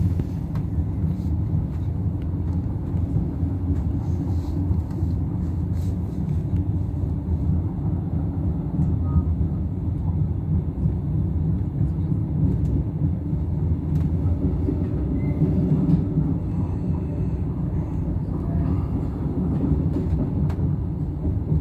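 Steady low rumble of a moving passenger train heard from inside the carriage.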